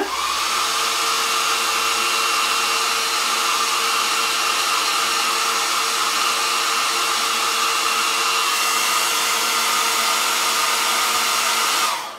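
Hair dryer switched on, its motor quickly rising to speed, then running steadily with a whine over the rush of air, and switched off near the end.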